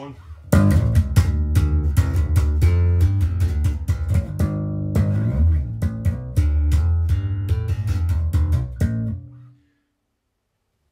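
Cort Curbow 4 electric bass with a Bartolini MK1 pickup, played in passive mode through a bass amplifier: a quick run of plucked notes starts about half a second in and stops shortly before the end, with one last note left ringing briefly.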